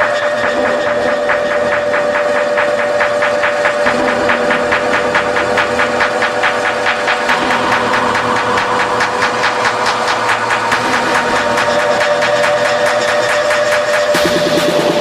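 Electronic techno intro: a held synth drone on one steady tone under a fast-pulsing, noisy synth texture, played from a DJ controller. Near the end it gives way as the full techno track drops in.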